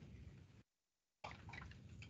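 Near silence: faint room tone from a video-call microphone, which cuts out completely for about half a second.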